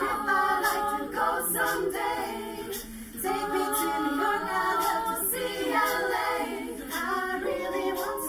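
Women's a cappella choir singing a pop arrangement in several voice parts, with short crisp ticks on top and a brief dip in loudness about three seconds in.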